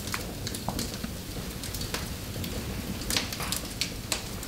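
Wood fire burning in a fireplace, crackling with irregular sharp pops and snaps over a low steady rumble, with a louder pop about three seconds in.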